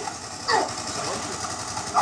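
People laughing and shouting over a steady, high buzz.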